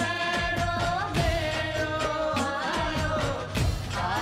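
Rajasthani folk song: a held, ornamented sung melody over steady drum beats.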